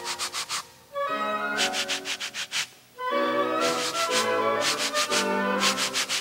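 Wooden back scratcher scratching in groups of quick rasping strokes, several a second, over music of held notes that starts a new phrase about every two seconds.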